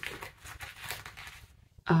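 Faint rustle of a crocheted chalk bag's fabric liner being handled and opened out by hand, dying away about a second and a half in.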